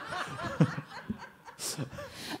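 People chuckling and laughing softly, the laughter trailing off about a second in.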